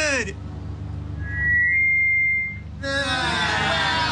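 A shouted voice breaks off, then a single high, steady whistle-like tone sounds for about a second and a half over a low music bed, before shouting voices come back in near the end.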